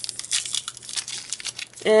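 A foil Pokémon card booster pack being torn open and crinkled by hand, a quick run of sharp crackles and rips.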